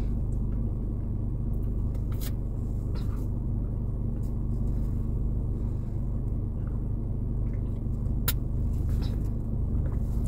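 Steady low rumble of a car heard from inside the cabin, with a few faint clicks.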